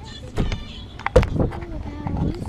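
Golf cart driving, wind buffeting the microphone in two strong low thumps, with a low steady whine from the cart's motor in the second half.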